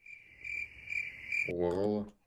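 A steady, thin, high-pitched tone that swells slightly about every half second, lasting about a second and a half. It is followed near the end by a man's short drawn-out vocal sound.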